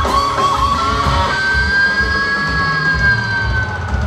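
Live electric-guitar-led instrumental rock band. About a second in, the lead electric guitar holds one long, high sustained note that bends gently up and back down, over bass and drums.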